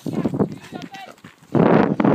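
Voices of people among a pack of leashed huskies. About a second and a half in, a loud rough noise close to the microphone drowns everything.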